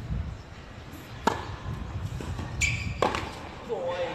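Tennis ball struck by rackets and bouncing on a hard court during a rally. There is a sharp pop about a second in, a brief high-pitched squeal near the middle, and another sharp pop about three seconds in.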